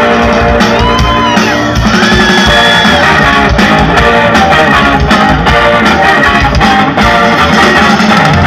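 Live garage rock band playing loudly: distorted electric guitars, keytar, bass and drums in a steady driving groove.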